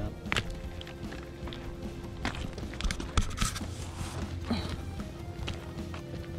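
Footsteps on loose gravel, a few irregular steps, over steady background music.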